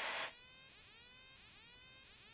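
A faint hiss cuts off shortly in. It leaves near silence with faint, thin electronic chirps rising in pitch and repeating about every half second.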